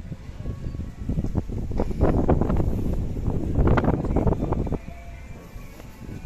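Wind buffeting the camera microphone: a rough, crackling rumble that builds about a second in and dies away near the end, over faint background music.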